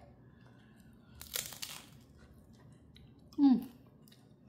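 Tortilla chip crunching for about half a second, a little over a second in.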